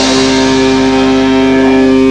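Live rock band holding its closing chord: amplified electric guitars and bass ringing out loud and steady as the song ends.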